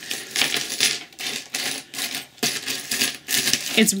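Metal chains, rings and beads of a multi-chain costume necklace clinking and jingling in the hands as it is untangled, in many short clicks. The metal is a very lightweight one.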